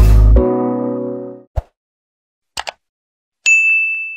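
Outro music ends on a held chord that fades out, followed by subscribe-button sound effects: a soft thump, two quick mouse clicks, then a bright notification-bell ding that rings on.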